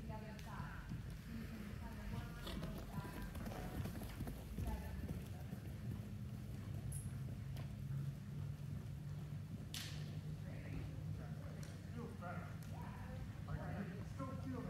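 Hoofbeats of ridden horses moving over the soft footing of an indoor riding arena, with faint voices and a low steady hum underneath. A single sharp click comes about ten seconds in.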